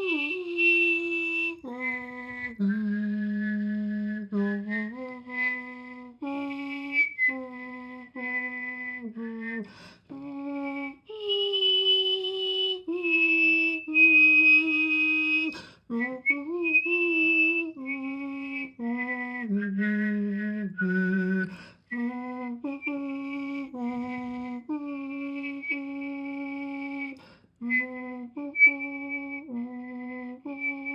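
A trombone melody performed by one person with voice and whistling together: held low voiced notes carry the tune while a high whistled tone sounds above them. It moves from note to note in phrases, with short breaks for breath.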